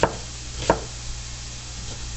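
Chef's knife dicing an onion on a bamboo cutting board: two sharp knocks of the blade on the wood, the second about two-thirds of a second after the first, over a steady low hum.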